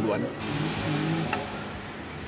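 A motor vehicle passing, its noise swelling and fading within about a second, under faint background voices.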